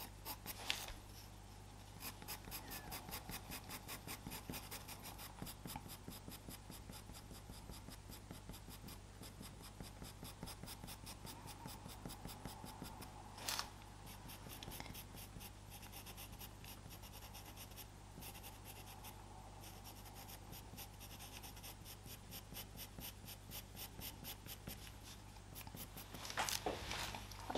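Faint scratching of a Faber-Castell Pitt Pastel pencil on Pastelmat paper in quick, repeated short strokes, several a second. There is one louder tap about halfway through.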